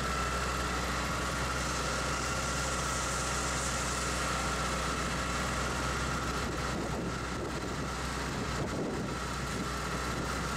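Steady drone of machinery running, with a constant faint high tone over a low hum and no change in level.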